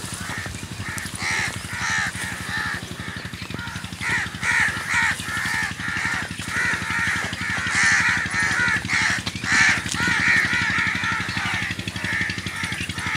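Crows cawing again and again, many short calls overlapping, over a steady low mechanical drone.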